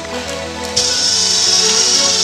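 Background music, and about three-quarters of a second in a power drill fitted with a hole saw starts cutting, a loud, high-pitched noise over the music.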